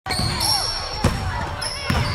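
Basketball bouncing on a hard court, two sharp bounces about a second apart, over squeaky, echoing court background sound.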